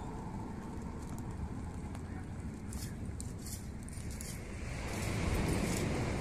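Small open fire of twigs and dry leaves crackling faintly with a few sharp snaps, under a steady rush of outdoor wind on the microphone that swells about five seconds in.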